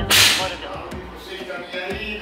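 A short hiss of walkie-talkie static at the very start, about half a second long, as the incoming radio transmission ends. Fainter sound follows.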